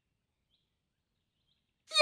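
Near silence, with a person's voice starting just at the end.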